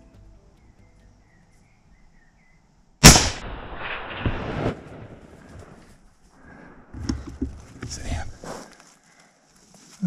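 A single rifle shot about three seconds in, sharp and loud, with its report trailing off over a second or so. The shot is a solid hit on a sika deer.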